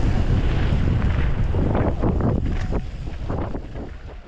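Wind buffeting the mic of an action camera riding a mountain bike down a dirt trail, with short knocks and rattles from the bike over bumps about halfway through. The sound fades away over the last second.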